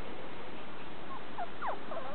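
A few short, high-pitched squeaks starting about a second and a half in, over a steady background hiss.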